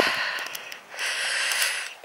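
A person's breathing close to the microphone while walking: two audible breaths, with a few faint clicks.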